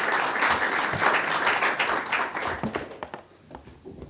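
Audience applauding: many people clapping together, thinning out in the last second or so into a few scattered claps.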